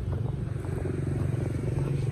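A vehicle engine running steadily, a low drone with a fast even pulse.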